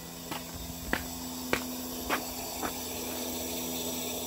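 Propane burners of a pig roaster running, a steady hiss of gas flame. A few sharp ticks come about every half second through the first part.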